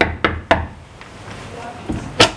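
Knuckles knocking on a door: three quick raps at about four a second in the first half second.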